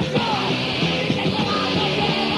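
Anarcho-crust punk from a demo tape: a full band playing loud and dense, with yelled vocals.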